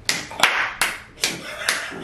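A person clapping their hands in a steady rhythm, five claps at a little over two a second.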